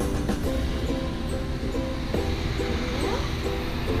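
Background music: a tune of short repeated notes over a steady low layer.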